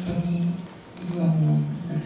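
A woman's voice over a handheld microphone: two drawn-out vocal sounds held at a nearly level pitch, the second, longer one starting about a second in.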